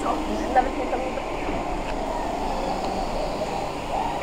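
Go-kart engines running out of sight at a distance, a steady drone inside a covered parking-garage track, with faint voices mixed in.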